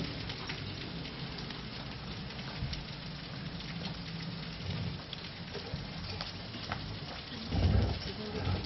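Steady hiss of room noise, with a few faint ticks and a short low rumble near the end.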